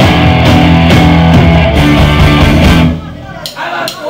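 Live punk rock band, with distorted guitar, bass and drums, playing loud and fast, then stopping abruptly about three seconds in, leaving quieter voices.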